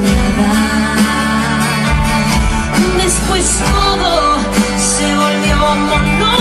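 Romantic ballad music with guitar, playing steadily at full level.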